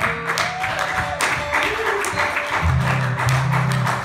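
Audience applause at the close of a song, over a strummed acoustic guitar whose low notes ring out again about two and a half seconds in.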